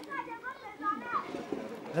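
Children's voices in the background, chattering and calling with high, bending pitches.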